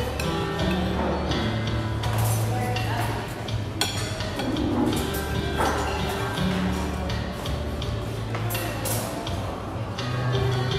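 Background music playing in a restaurant dining room, under the murmur of diners' voices and occasional clinks of dishes and serving utensils.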